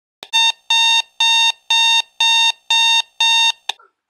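Electronic alarm clock beeping: seven short, even beeps of one pitch, about two a second, stopping shortly before the end with a brief final blip.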